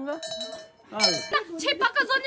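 Large metal livestock bells ringing, their steady tones fading away, then a voice about a second in.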